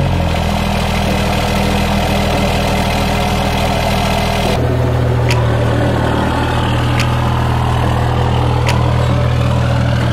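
Dodge Ram pickup's diesel engine idling steadily just after starting. About halfway through the sound cuts abruptly to a slightly different, steady idle, with faint ticks about every second and a half.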